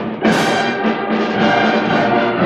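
School concert band of woodwinds and brass with percussion playing sustained chords, with a loud accented entry about a quarter of a second in.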